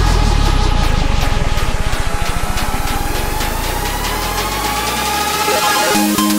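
Electronic dance track in a transition: a low, rapidly pulsing bass buzz that speeds up and then fades, under a synth tone rising slowly through the second half, building into the next section that begins right at the end.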